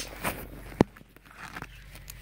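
Handling noises close to a phone microphone while dolls and props are moved: a single sharp click or tap just under a second in, with a few soft bumps and rustles around it.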